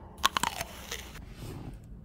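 Biting into and chewing a soft breakfast sandwich close to the microphone, with a few sharp crunchy clicks in the first second.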